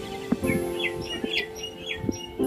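Common mynas calling: a quick string of short chirps and whistles starting about half a second in, over steady background music.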